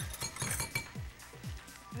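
A metal spoon clinking and scraping against a plate and a glass bowl while mayonnaise is spooned onto shredded cabbage and carrot, a few sharp clinks. Background music with a steady beat, about two beats a second, underneath.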